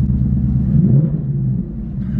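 2024 Ford Mustang GT's 5.0-litre V8 running through a new Corsa cutback exhaust in normal mode, heard from inside the cabin as the car pulls away. It is a steady low rumble that rises briefly about a second in and then eases off, sounding healthy.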